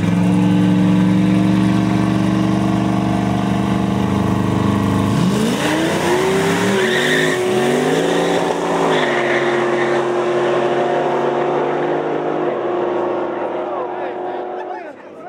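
Two street-race cars, a nitrous Mustang and a turbocharged LS-powered Malibu, running steadily side by side on the line, then launching about five seconds in. Engine pitch climbs and falls back with several quick gear changes, then settles into a steadier note as the cars pull away down the street.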